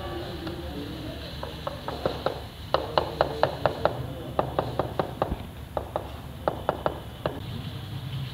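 A rubber mallet tapping ceramic wall tiles to bed them into the mortar, a quick series of sharp taps, about four or five a second, in short groups with brief pauses.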